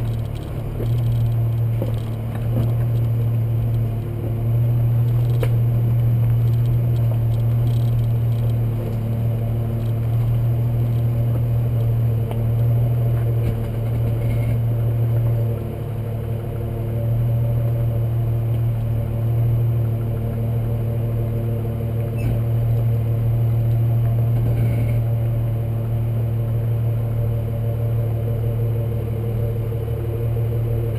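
Jeep engine running with a steady low drone while driving slowly over a rocky dirt off-road trail, easing off briefly a few times, with light clicks and rattles from rocks under the tyres.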